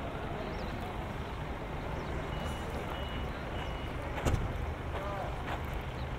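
Open-air ambience: a steady low rumble of distant traffic with faint far-off voices calling. Three short high tones sound near the middle, and a single thump comes a little past the middle.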